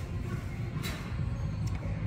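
Steady low rumble of shop background noise, with a sharp click about a second in and a fainter one shortly before the end.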